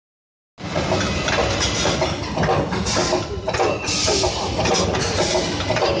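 Weld-seam rolling machine running, its rollers pressing flat the welded seam of a metal flask tube. The noise is a steady mechanical din with uneven surges of hiss, starting about half a second in.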